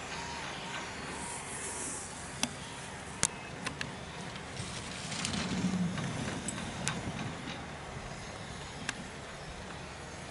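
Skis scraping and hissing on hard-packed snow as a racer starts and runs down a slalom course, with several sharp clacks, over a steady outdoor wind noise.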